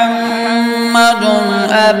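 A man's voice reciting the Quran in melodic chanted style, holding one long drawn-out note that steps slightly lower in pitch just past halfway.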